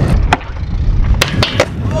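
Skateboard wheels rolling on concrete, with a sharp clack about a third of a second in and three more in quick succession a little past a second in, as the board meets a low metal flat rail.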